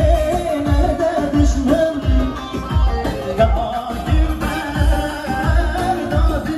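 Live wedding-band music played loud through PA speakers: a man singing into a microphone over a steady drum beat of about two strokes a second.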